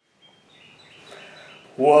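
Faint background with small bird chirps repeating, then a man exclaims "whoa" near the end, the loudest sound.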